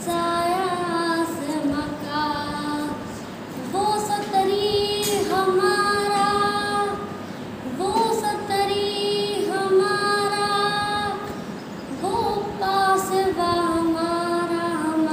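A schoolgirl singing a patriotic song solo, in long held notes that glide between pitches, with short breaks between phrases.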